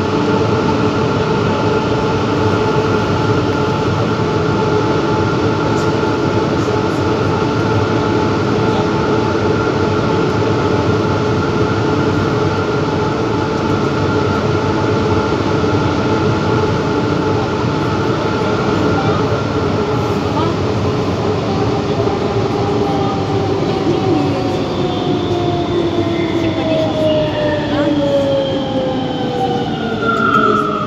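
Siemens/Matra VAL 208 rubber-tyred metro train running through a tunnel: a loud steady rolling noise with a whine of several held tones. In the last ten seconds the whine falls steadily in pitch as the train slows into a station.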